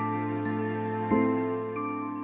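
Slow, calm instrumental Christmas music on piano: single ringing notes about every half second over a held low bass note, with the loudest note about a second in.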